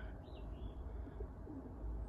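Faint bird calls over a low, steady background hum.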